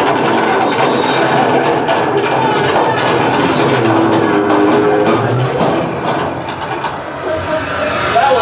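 Attraction's simulated elevator rattling and rumbling, a loud, steady clatter of rapid knocks, easing off slightly near the end.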